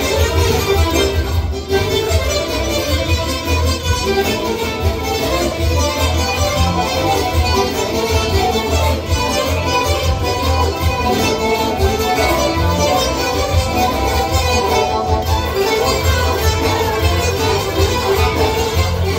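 Music: an improvised line on a Godin ACS Slim nylon-string electro-acoustic guitar in 9/8 time, over a steady bass.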